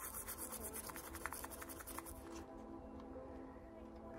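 Toothbrush bristles scrubbing a BGA chip in quick, faint strokes that stop about halfway through, working at the softened green solder mask, which is not coming off. Quiet background music with steady tones plays underneath.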